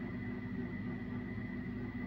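Steady low background hum of a small room, with a faint constant high whine.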